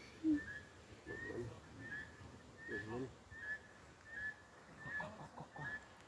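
A bird in the trees repeating a short, high, whistled two-part note about every three-quarters of a second, with brief soft voice-like sounds underneath; the loudest of these comes just after the start.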